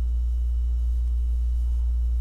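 Steady low hum, a constant tone with no change in pitch or level.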